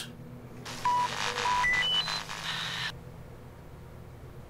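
Video phone's electronic call signal: a hiss of static with a quick run of beeps climbing in pitch, cutting off suddenly about three seconds in, as the call ends.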